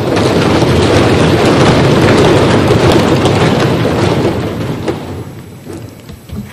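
Applause from the members of parliament in the chamber, loud at once after the speaker's sentence, holding for about four seconds and then dying away.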